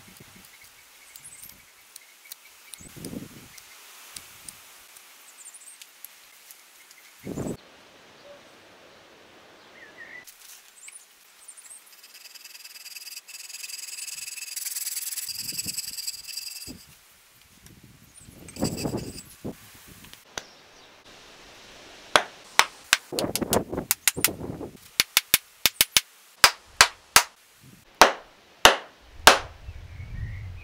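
Hand-tool work on a wooden hammer handle: light scraping and cutting with a blade, and a steadier cutting stretch in the middle. For the last several seconds come a dense, irregular run of sharp hammer blows on the handle's end, driving it into the ball-peen hammer's head.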